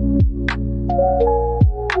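Lo-fi hip-hop track: a slow beat of deep kick drums and snare hits under sustained soft keyboard chords.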